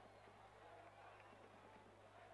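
Near silence: a faint steady low hum under a light hiss.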